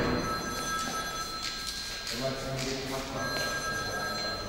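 A telephone ringing in spells of steady electronic tones, with a voice heard briefly about halfway through.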